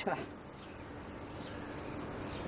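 Steady, high-pitched chorus of insects, continuous and unchanging.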